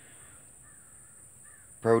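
A few faint, distant bird calls.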